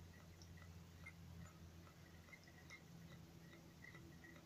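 Near silence, with faint light ticks about three times a second from a small magnetic Ringbom low-temperature-differential Stirling engine running on ice water versus room-temperature air. The ticks fit its magnet-coupled displacer being lifted to the top of the chamber and dropping back.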